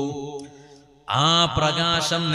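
A man's voice chanting in long held melodic notes with a slight waver, in devotional style. One phrase fades out in the first second, and after a short breath a new held note comes in just past the one-second mark, sliding up in pitch.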